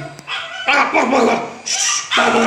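A dog barking in two loud bursts, starting about a third of a second in and running to the end.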